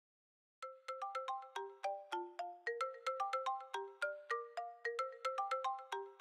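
Smartphone alarm tone playing a quick, repeating melody of short chiming notes, about five a second. It starts about half a second in and runs on past the end.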